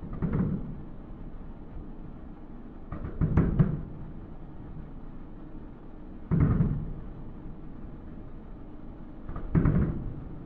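Distant booms of aerial fireworks shells bursting, four bursts about three seconds apart. The second is a quick cluster of several reports.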